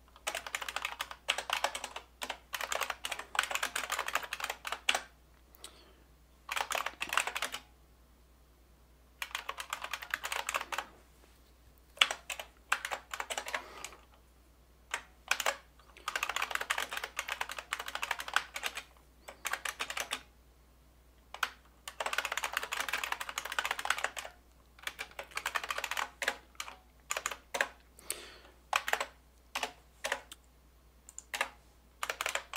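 Typing on a computer keyboard in runs of rapid keystrokes a few seconds long, broken by short pauses.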